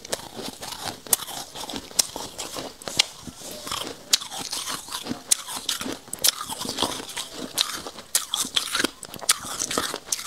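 Close-miked chewing of a mouthful of freezer frost: a dense, irregular run of crisp crunches and crackles as the powdery ice is bitten and ground between the teeth.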